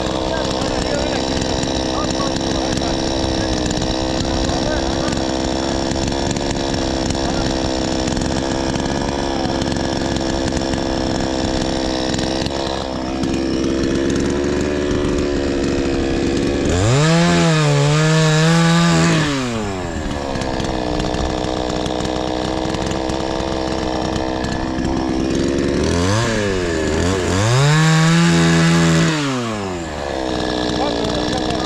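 Two-stroke chainsaw idling steadily, then revved up twice, about halfway through and again near the end, each time held high for two to three seconds to cut through a wooden pole before dropping back to idle.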